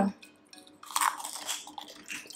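Close-up crunching and chewing of a crisp rolled wafer snack, a run of dry crackly crunches starting about a second in.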